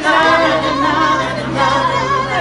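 A choir singing, several voices holding long notes.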